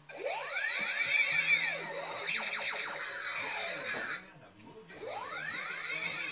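Electronic sound effect from a battery-powered light-up toy gun: many overlapping whistling tones sweeping up and down. It breaks off about four seconds in and starts again a second later.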